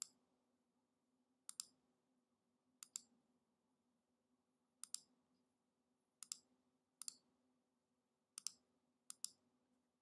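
Computer mouse clicking about eight times at irregular intervals, each click a quick press-and-release double, as characters are picked one at a time on an emulator's on-screen keyboard. A faint steady low hum sits underneath.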